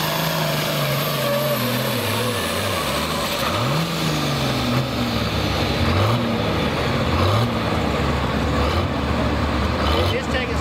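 Diesel engine of a Light Pro Stock pulling tractor under full load, its pitch sinking steadily as the sled drags it down at the end of the pull. Near four seconds it revs up sharply, gives a couple of short revs around six and seven seconds, then settles to a lower, steady idle.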